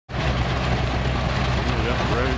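Belt-driven threshing machine running at working speed as wheat is fed through it: a steady low drone under an even rushing, rattling noise.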